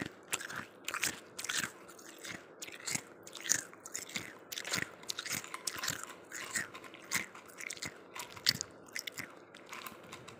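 A person chewing chunks of ice, a steady run of sharp crunches at about three a second.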